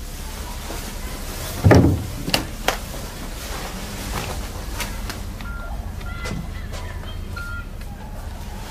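A heavy thump, then two lighter knocks, over a low steady hum. A few seconds later come several short electronic beeps at one pitch.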